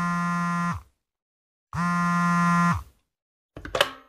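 Telephone ringing tone of a call waiting to be answered: two identical steady tones, each about a second long, a second apart. A short voice comes in near the end.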